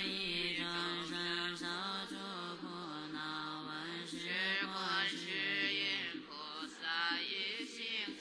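Chinese Buddhist chanting, sung melodically over a steady low drone with musical accompaniment.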